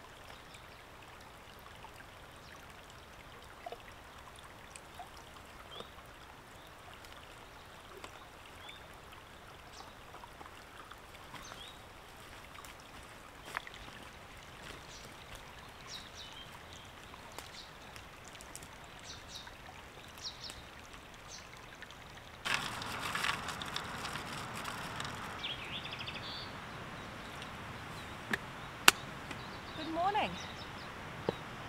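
Small shallow stream trickling faintly and steadily over stones, with scattered light ticks. About three-quarters of the way through, a louder rushing noise starts suddenly and lasts a few seconds.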